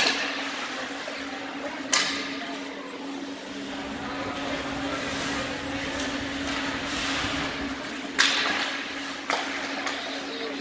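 Ice hockey play on an indoor rink: sharp knocks of the puck, sticks or players hitting the boards, four times, loudest about eight seconds in. Under them runs the noise of skates scraping the ice, with a steady low hum in the hall.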